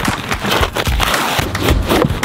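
Cardboard box and plastic bag being handled and lifted, a dense crackly rustling and scraping.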